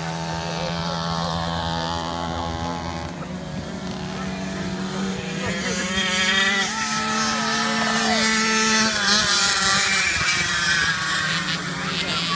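Several Mofa mopeds' small 50 cc two-stroke engines racing at high revs, their pitches wavering as the riders accelerate and back off. They get louder from about halfway as riders pass close.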